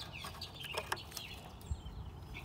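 Birds calling repeatedly in short chirping calls, with a couple of faint knocks about a second in and near the end.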